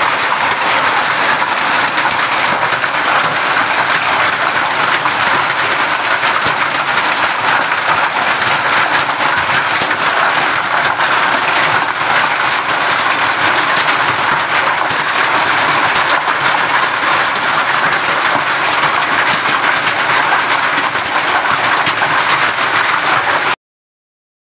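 Hail and rain falling on a corrugated metal roof: a loud, dense, steady clatter of countless small impacts on the sheets, cutting off abruptly near the end.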